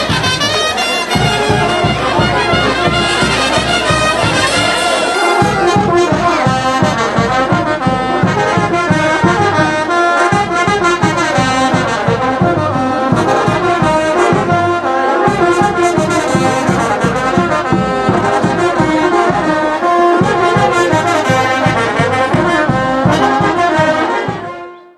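Brass band playing lively festival dance music, trumpets, trombones and tubas together over a steady drum beat.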